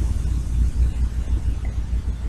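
Low, fluctuating rumble with a faint hiss over it: steady background noise on the recording microphone.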